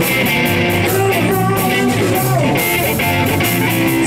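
Live blues-rock band playing: electric guitar, electric bass and a drum kit together, with a steady beat.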